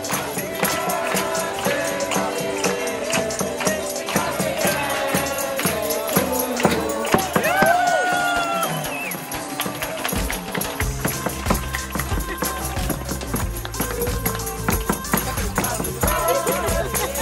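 A tambourine played by a waiter while waiters and guests clap along, with voices singing and cheering over music. A low thumping beat comes in about ten seconds in.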